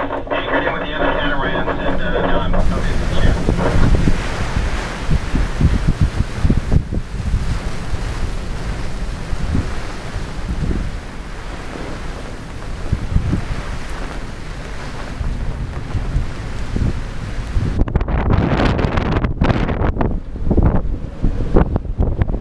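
Strong gusting wind blasting across a catamaran's deck and buffeting the microphone, over wind-driven chop in the harbour. It opens with the last couple of seconds of a VHF radio call, and the gusts turn choppier near the end.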